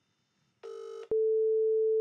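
Telephone line tones over a phone's speakerphone: a short buzzy tone about half a second in, a click, then a steady tone held until speech breaks in.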